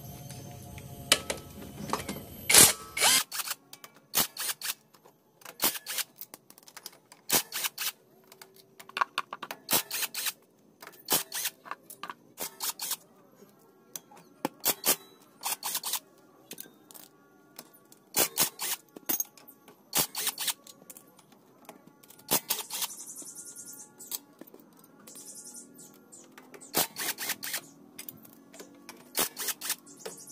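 Scattered sharp metallic clicks and clinks of hand tools and loose bolts while the bolts of a scooter's CVT cover are undone and handled, irregular and sometimes in quick runs.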